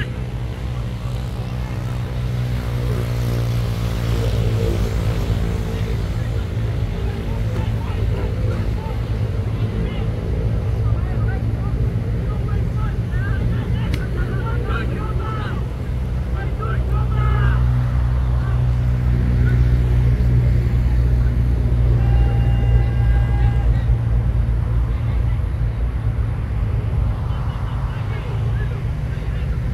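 Open-air football match sound: players' distant shouts and calls over a steady low rumble.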